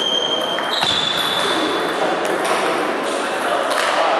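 A table tennis rally: the celluloid ball clicks off the bats and the table, echoing in a large hall. A high squeak is held for about two seconds early on, stepping up in pitch partway through.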